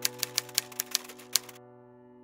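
Typewriter keys clacking in a quick, uneven run of about nine strikes that stops about one and a half seconds in, over a held musical chord.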